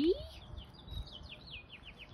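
Wild birds singing: a quick run of short, falling chirps repeated several times a second.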